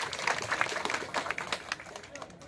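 Scattered hand clapping from a seated crowd: a rapid, irregular patter of claps that thins out toward the end.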